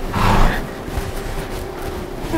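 A horse blowing one short, noisy breath out through its nostrils, about half a second long, just after the start, over a steady faint hum.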